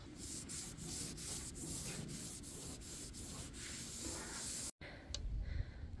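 A rag rubbing back and forth over the bus's painted metal roof in even strokes, about three a second, wiping it down with acetone before painting. The strokes stop abruptly a little before the end.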